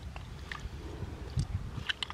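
Hands groping among pebbles in a shallow rock pool: a few faint small clicks and water sounds over a steady low rumble.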